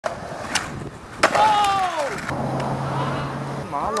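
Skateboard on a concrete sidewalk: a clack about half a second in, then a louder sharp clack of the board about a second and a quarter in as the skater goes off the gap. Right after it a person gives a drawn-out shout that falls in pitch, and there is a short laugh at the end.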